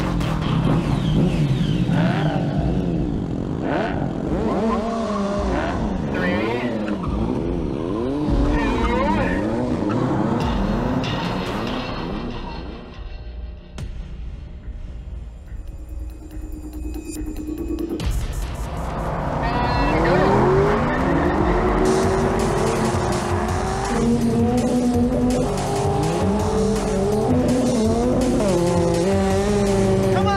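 Engines of a Triumph Speed Triple 1050 motorcycle and a Corvette Z06 revving and accelerating hard at the start of a drag race. Over the first dozen seconds the pitch repeatedly rises and falls, then it dips briefly. From the middle on it climbs again in steps, as through gear changes.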